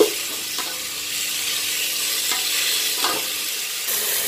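Chopped onions and tomatoes sizzling in oil in a pan while a spatula stirs them, with a sharp knock of the spatula against the pan at the start and a few softer scrapes after.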